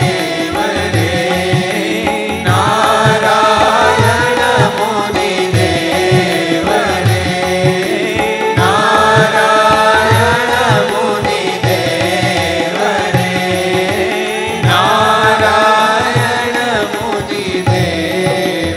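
Devotional song sung in phrases over tabla accompaniment, with the congregation clapping along in time.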